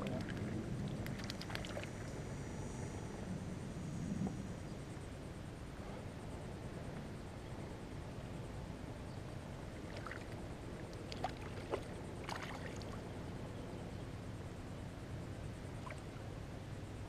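Hooked fish splashing at the water's surface beside a kayak, with a few short, sharp splashes about ten to thirteen seconds in, over a steady low background rush.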